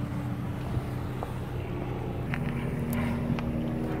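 Car engine idling with a steady low hum, with a few faint clicks over it.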